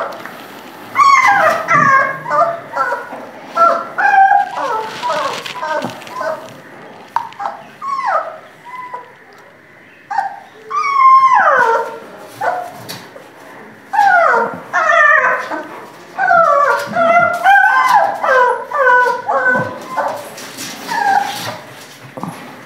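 Young Great Dane puppies whimpering and yelping: clusters of short, high whines that slide down in pitch, with a quieter pause around the middle.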